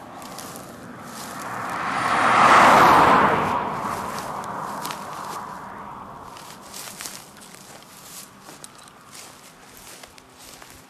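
A vehicle passing at speed on the highway. Its tyre and engine noise swells to a peak about two and a half seconds in, then fades away over the next few seconds.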